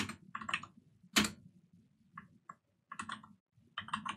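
Computer keyboard keystrokes in short, irregular runs of typing, with one louder key press about a second in.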